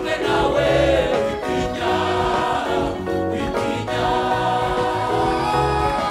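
Mixed-voice gospel choir singing together through handheld microphones, many voices in harmony over sustained low bass notes.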